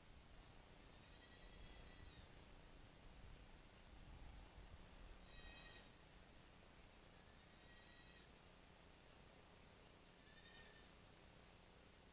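A goat bleating faintly four times, each call about a second long and spaced a few seconds apart.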